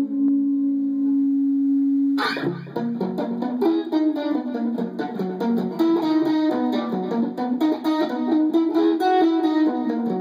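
Stratocaster-style electric guitar played through an amplifier: a held note rings for about two seconds, then a sharp attack opens a fast run of single notes stepping up and down in pitch.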